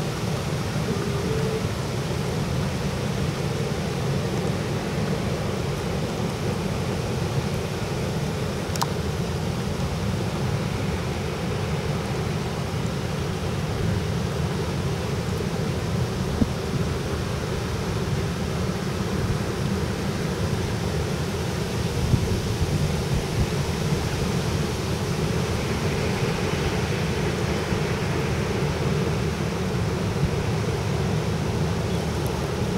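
Steady low drone of an inland motor tanker's diesel engine under way, mixed with the wash of water along its hull.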